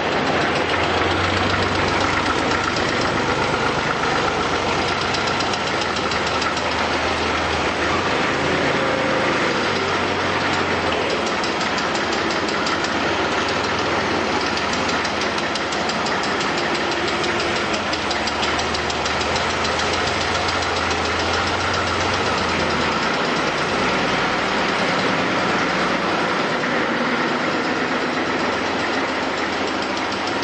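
Steady, loud mechanical noise of assembly-line machinery, with a low engine-like hum under it that shifts and fades about three-quarters of the way through.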